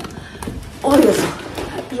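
A woman's short spoken exclamation, "O!", about a second in, falling in pitch.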